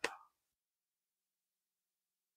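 Near silence: the tail end of a spoken word in the first instant, then dead silence with no sound at all.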